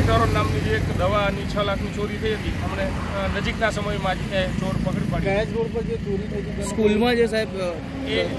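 A man speaking, over a low rumble that fades about a second in.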